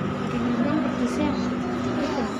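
Indistinct voices talking over a steady background noise.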